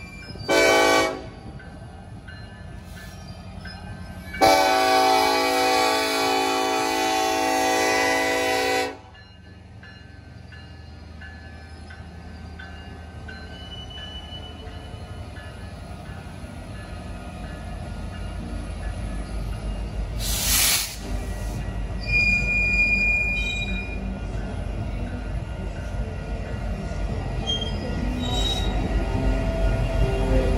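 Diesel freight locomotive horn: one short blast about half a second in, then one long blast of about four and a half seconds. After that comes a low rumble of locomotive engines and wheels that grows steadily louder as the lead units pass close by.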